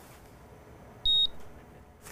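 A single short, high-pitched electronic beep about a second in, one steady tone lasting about a quarter of a second.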